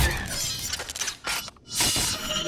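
Film sound effects of crashing, clanking metal and shattering debris as giant robots move. They dip briefly about one and a half seconds in, then return with a loud clattering hiss, under faint music.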